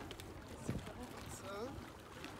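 Faint, indistinct voices of people talking at a distance, over a steady background hiss of wind and lapping water.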